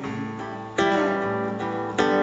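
Acoustic guitar chords strummed and left ringing: one chord dies away, a fresh chord is strummed about three-quarters of a second in, and another just at the end.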